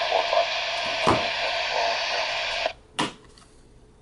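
Icom IC-A20 airband radio's speaker hissing with AM static and faint garbled sound on an open channel, cut off abruptly about two-thirds of the way through as the squelch closes. A single knock follows as the plastic battery case is handled.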